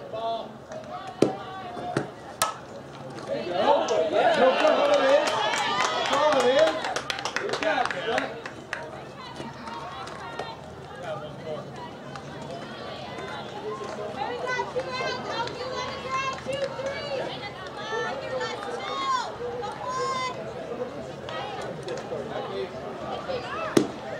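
A sharp crack of a softball bat hitting the ball about two seconds in. Then spectators shout and clap for several seconds, and scattered voices and calls follow.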